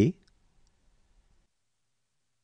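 The end of a voice pronouncing a letter name, cut off just after the start, then near silence with a few faint clicks.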